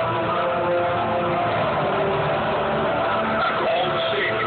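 Stadium PA system playing the sound track of a football intro video, sustained tones over a rough, steady wash of sound, with crowd noise.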